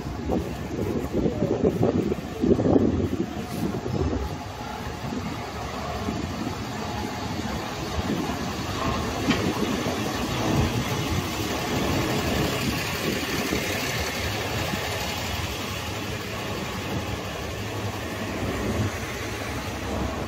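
City street noise with a motor vehicle engine running steadily. There are uneven low rumbles in the first few seconds, and the sound grows hissier through the middle of the stretch.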